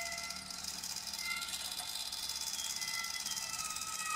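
Contemporary chamber-ensemble music, quiet and sustained: thin high held tones, a few sliding slowly downward near the end, over a fine high shimmering haze and a faint low held note.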